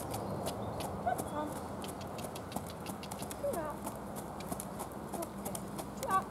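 A pony trotting on a sand arena surface, its hoofbeats falling in a steady rhythm of about three a second.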